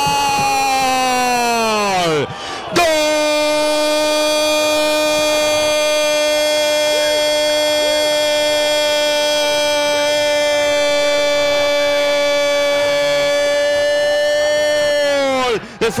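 A radio football commentator's long goal cry in Spanish. A falling shout breaks for a breath about two seconds in, then one 'gooool' is held on a steady pitch for about twelve seconds and stops near the end.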